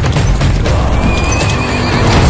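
Film-trailer music with a horse whinnying over it, a wavering high call starting about a second in.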